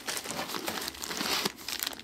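Sealed plastic pouch of a Chinook BleederPAK crinkling as it is handled and pulled out, with a continuous run of irregular small crackles.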